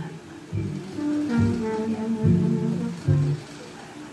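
Music from a CD playing through a Sony MHC-GTR333 mini stereo's speaker, with plucked-string notes over a bass line, starting about half a second in. The stereo plays normally even though its display stays blank.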